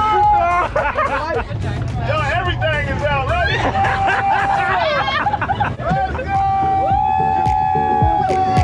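Background music with long sung notes, mixed with excited voices of people on the boat, over a steady low rumble of wind and the boat's motor.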